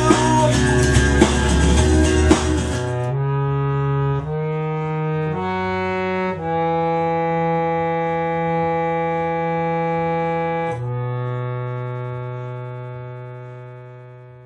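Loud rock music with guitar and drums stops about three seconds in. A keyboard then plays slow held chords, changing a few times before one long sustained chord. A final low chord fades away near the end.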